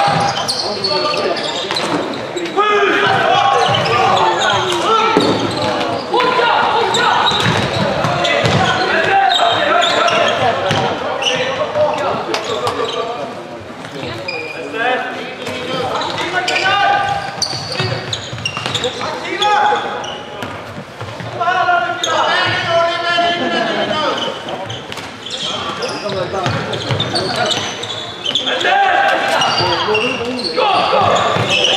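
Floorball play in a sports hall: frequent sharp clacks of sticks striking the plastic ball and the floor, under players and spectators calling out, echoing in the hall.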